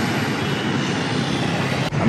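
Street traffic noise: a steady rush of passing vehicles with a low engine hum underneath.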